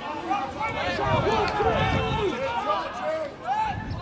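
Several voices shouting and calling out at once during a rugby match, overlapping and unintelligible.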